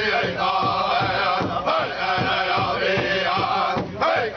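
Pow wow drum group singing a chant together while striking one large hide-topped drum in unison with sticks, in a steady beat of about three strokes a second.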